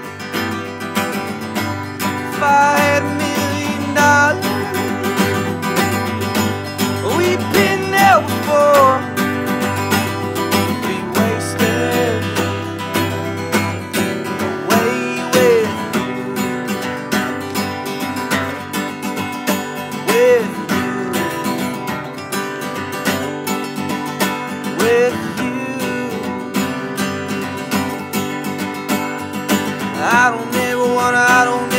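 Acoustic guitar, capoed, strummed in a steady country-style rhythm, with a few short sliding melodic notes over the chords.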